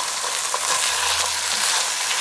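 Browned ground beef and salsa sizzling steadily in a nonstick skillet on a gas burner.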